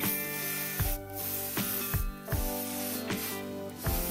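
Aerosol leaf-shine cleaner spraying in three hissing bursts with short breaks between them, over background music with a steady beat.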